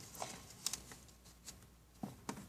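Paper being handled on a tabletop, heard faintly as a few soft rustles and ticks spread through a quiet stretch.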